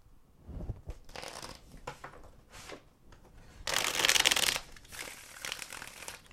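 A Crystal Visions tarot deck being shuffled by hand: scattered rustles of cards, with one dense, fast run of card flicks about four seconds in.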